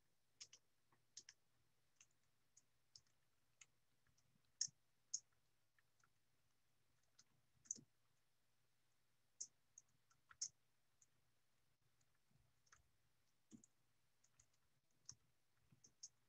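Faint, irregular clicks, one to three a second, of someone working at a computer over an open call microphone, with a low steady hum beneath.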